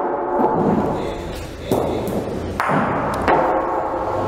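Bocce balls striking on an indoor court: sharp clacks and thuds, several times, each followed by ringing in the hall and voices of spectators.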